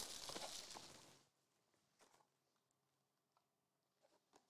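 Near silence: a faint rustle fading out over the first second, then silence.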